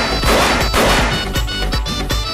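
Stage confetti cannons going off: a loud burst of noise lasting about a second and a half, over background music with a steady beat.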